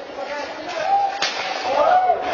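Shouting voices rise as armoured fighters close in, with one sharp crack of a weapon striking armour a little over a second in.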